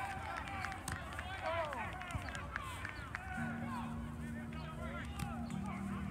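A flock of geese honking, many short overlapping calls at once. A steady low hum joins about three and a half seconds in.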